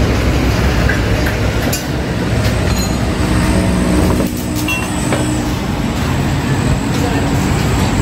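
Small motorcycle engine running steadily with a low rumble, with a few light clicks of metal.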